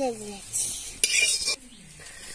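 Steel spatula scraping against a metal kadai while turning frying fritters, two short scrapes about half a second apart, with a light sizzle of oil underneath.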